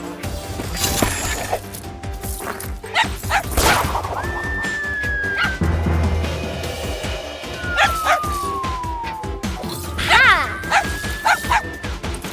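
Cartoon background music with sound effects: a whistle-like tone that rises then holds about a third of the way in, a long falling whistle about two-thirds in, and a robot dog character's yips near the end.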